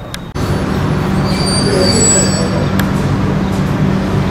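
An engine running steadily with a low hum, which sets in abruptly about a third of a second in, with a single click near three seconds.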